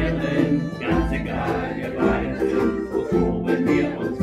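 Several ukuleles strummed together in rhythm, with a group of voices singing along.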